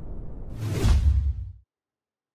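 Logo-sting sound effect: a low rumbling drone swells into a whoosh with a deep bass hit about half a second in, then cuts off suddenly into silence.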